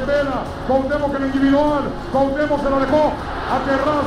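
A man speaking in short phrases: match commentary from the football broadcast being watched.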